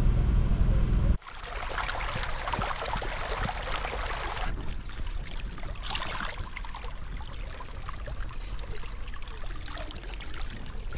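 Water running and splashing in a small irrigation channel, spilling over a plastic sheet laid in the stream around a hand held in the flow. A low droning hum in the first second cuts off abruptly.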